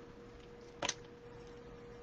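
A faint steady hum, with one sharp double click a little under a second in, from handling craft supplies while gluing paper.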